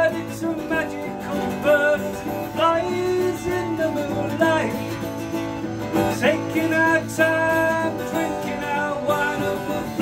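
Acoustic guitar being played in a steady rhythm under a man's voice singing a wordless, folk-style melody.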